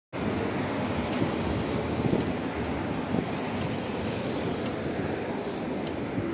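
Steady street traffic noise from cars driving on a busy road, with wind rumbling and buffeting on the moving phone microphone.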